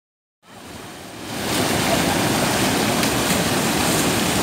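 Floodwater pouring over a low concrete check dam and churning in the pool below: a steady rushing that fades in about half a second in and reaches full loudness a second later.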